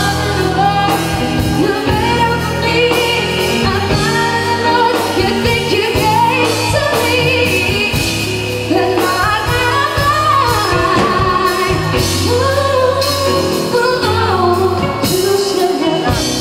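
A woman singing a song into a microphone, backed by a live band with keyboard and drums, the melody gliding over a steady bass line.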